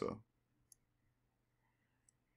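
A single faint computer mouse click about three-quarters of a second in, otherwise near silence.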